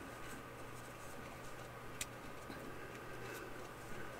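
Faint handling sounds of cotton yarn and a crochet hook as the tail end is pulled to draw a magic ring tight: soft rustling with a few small clicks, one sharper about two seconds in, over a low steady hum.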